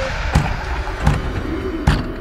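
Three heavy knocks on a wooden door, evenly spaced about three-quarters of a second apart, over a low background rumble.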